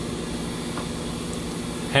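A steady low mechanical hum with no distinct events.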